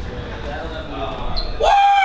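Low murmur of people talking in a large room, then about one and a half seconds in a man's loud, drawn-out shout on a held pitch that falls away at the end.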